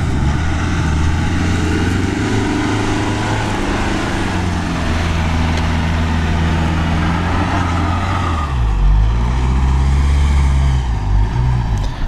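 Mitsubishi Pajero Sport's engine pulling steadily under heavy load as the SUV climbs a steep loose-sand slope. The engine note dips briefly about eight and a half seconds in, then picks up again.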